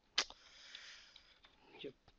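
A sharp click, then a drawn-in sniff through the nose into a close microphone, lasting about a second.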